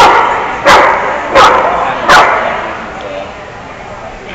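A dog barking three times, about two-thirds of a second apart, loud and echoing in a large hall.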